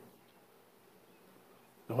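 Near silence: quiet room tone with a faint steady low hum, until a man starts speaking near the end.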